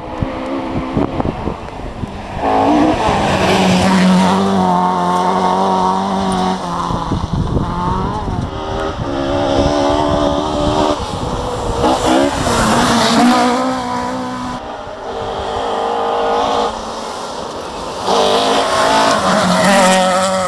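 Rally cars on a gravel forest stage, engines revving hard and dropping back as they change gear through the approach and pass. The engine note rises and falls repeatedly and changes abruptly several times between passes.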